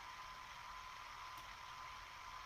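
Faint steady hiss of a home conversation recording, with a thin steady whine and a low hum underneath: the recording's background noise with no one speaking.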